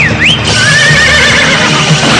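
A cartoon horse whinnies over rock theme music. It opens with quick rising and falling squeals, then a wavering call held for about a second.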